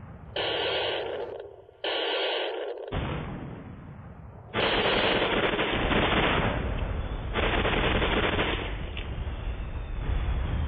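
Battle sound effects of rapid gunfire: two bursts of about a second each, then sustained firing from about halfway on.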